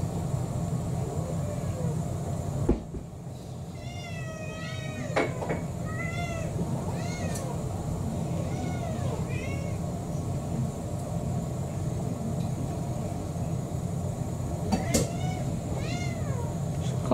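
Cats meowing for their dinner: a string of short, rising-and-falling meows between about four and ten seconds in, over a steady low hum. A single knock comes just before the meows.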